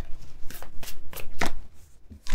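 A deck of oracle cards being shuffled by hand: a quick, uneven run of about five sharp card snaps.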